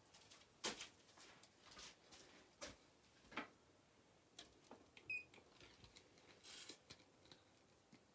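Near silence broken by scattered faint clicks and rustles of jewelry and card packaging being handled and picked up, with one brief high squeak about five seconds in.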